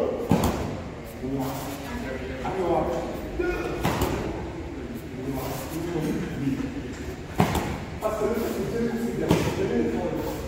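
A man talking in a large, reverberant hall, broken by four sharp cracks a few seconds apart from a karate demonstration's strikes and foot movements.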